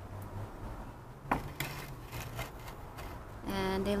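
A glass bottle set down on a wooden shelf: one light knock about a second in, followed by a few fainter ticks, over a low steady hum.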